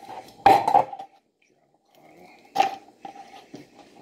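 A kitchen knife and an avocado being handled on a cutting board as the avocado is split open: two sharp knocks, about half a second in and about two and a half seconds in, with softer scraping and handling between them.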